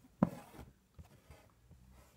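Embroidery needle and thread pulled through fabric stretched taut in a hoop, while satin-stitching. There is a sharp click and a brief rasp about a quarter second in, then a few faint scratches.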